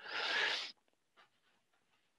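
A short rustling hiss close to the microphone, lasting under a second, then near silence.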